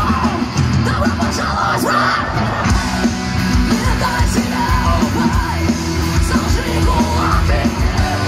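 A live rock band playing loud and heavy, with electric guitars, drums and yelled vocals, as heard from inside the crowd.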